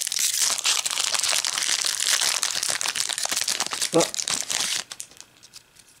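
A foil Yu-Gi-Oh! mega booster pack wrapper being torn open and crinkled by hand: a dense crackling rustle that stops about five seconds in as the cards come out.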